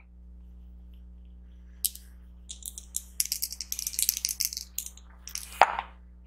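Polyhedral dice, a d4 and a d6, rattling and clattering into a felt-lined dice tray: a run of quick clicks lasting about three seconds, then one sharper knock, over a faint steady hum.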